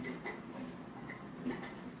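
Toddler eating pieces of orange: a few small, irregular wet clicks and smacks from chewing with an open mouth.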